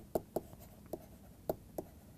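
Stylus tapping and scratching on a tablet surface while handwriting a word: a few faint, short, irregularly spaced ticks.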